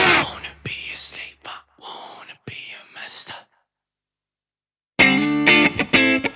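A rock song ends right at the start. A few short, faint voice-like whispers and clicks follow for about three seconds, then a moment of silence. About five seconds in, the next rock track starts loudly with distorted electric guitar.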